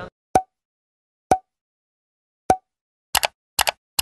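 Three short, separate pops about a second apart, then a quick run of double clicks near the end: pop-and-click sound effects of an animated Like, Share and Subscribe end screen.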